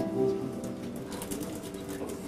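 Soft piano accompaniment: held chords ringing on quietly between the singer's phrases.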